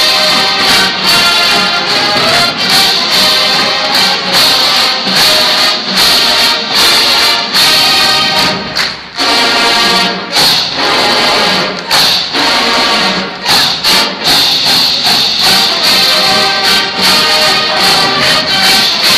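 A large marching band playing a loud, brass-heavy piece with sousaphones, in punchy stop-start rhythmic hits, with a brief drop about nine seconds in.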